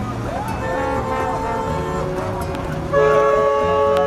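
Car horns honking in slow street traffic: one horn held for over a second near the start, then a louder, long blast from about three seconds in, over a constant traffic rumble.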